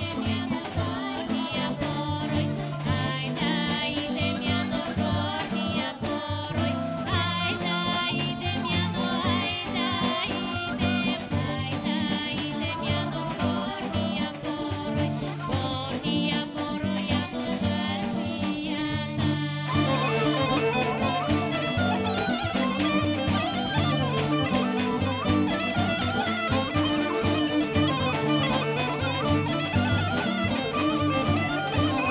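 Bulgarian folk song sung by a girl and a woman over a folk band with clarinet. About two-thirds of the way through the music breaks briefly and the band goes on louder and fuller as a dance tune.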